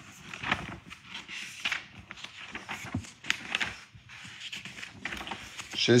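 Paper pages of a prayer book being leafed through: a run of short, irregular rustles and flicks.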